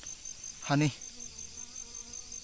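A high-pitched insect chirping in an even pulse of about eight chirps a second, with a faint low buzz in the second half.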